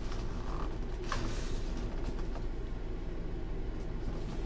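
Clear plastic bag crinkling briefly about a second in as hands handle a bagged football helmet in its box, over a steady low hum of room tone.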